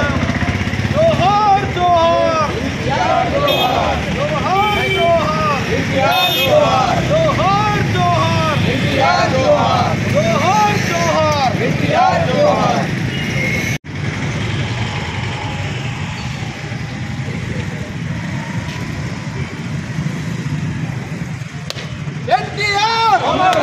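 Men outdoors shouting slogans in repeated rising-and-falling calls. About 14 seconds in the sound cuts suddenly to steady street noise with the low hum of motor traffic.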